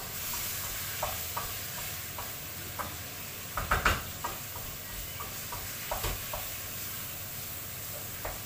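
Chicken sizzling in a frying pan on a gas hob, with a steady hiss, while a utensil stirs it, scraping and knocking against the pan now and then. The loudest knocks come about halfway through.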